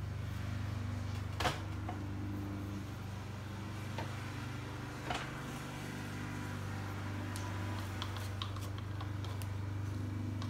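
A steady low mechanical hum fills the room, with a few light clicks and taps, about a second and a half in, at four and five seconds, and some smaller ticks near the end, as a paint cup and stick are handled over the canvas.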